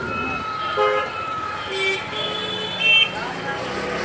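Busy street traffic with several short vehicle horn honks at different pitches, the loudest just before the end, over background chatter.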